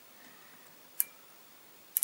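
Two sharp, short clicks about a second apart from the ratchet stop of an outside micrometer being turned closed on a crankshaft main journal, the clicks marking that it has reached measuring pressure.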